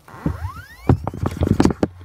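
Laptop hard drive in an Acer Aspire spinning back up, with a whine rising in pitch, then a run of sharp clicks from about a second in. The drive keeps spinning down and up again every twenty seconds or so. The owner is unsure whether the drive, the motherboard or the EFI firmware is at fault.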